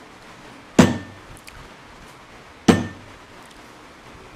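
Two sharp knocks about two seconds apart, each with a short ring, struck deliberately by a lecturing Buddhist monk as a Seon teaching gesture: the sound is made so the listeners will ask who it is that hears it.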